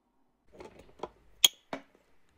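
Plastic retaining clips of a washer dryer's circuit board housing snapping shut: some light handling, then one sharp click about a second and a half in and a second, smaller click right after.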